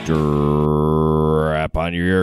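A man's low-pitched voice holding one long, steady syllable for about a second and a half, chant-like. It breaks off briefly and goes into a couple of spoken syllables near the end.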